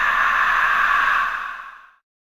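Omnisphere's "A-0 Vocal Noise Sweep" sound source playing a note, triggered by Audition Autoplay as the sound loads. It is a breathy band of pitched noise made entirely with the human voice, held steady and then dying away near the end.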